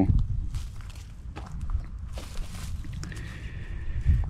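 Soft footsteps moving through a field, with a low, uneven wind rumble on the microphone and a faint high steady tone joining near the end.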